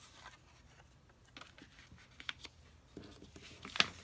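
Cardstock panels being handled on a table: faint paper rustles and a few light taps, the sharpest just before the end.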